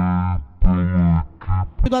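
Background music: a run of short held low notes with rich, steady overtones, three of them in quick succession.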